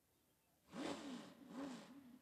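An engine revved twice in quick succession, its pitch rising and falling each time, starting about two-thirds of a second in after near silence.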